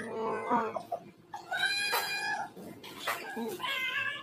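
Drawn-out, cat-like wailing calls, one in the first second and a higher, longer one a little past the middle, with a shorter one near the end.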